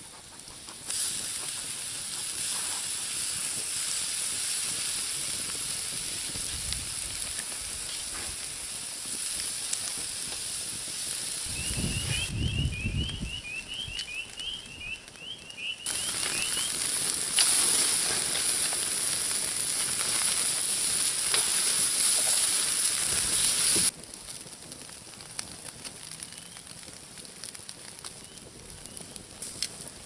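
Pork steaks sizzling on a wire grill grate over campfire coals, a steady hiss that breaks off and resumes at cuts, then drops to a quieter background about three quarters through.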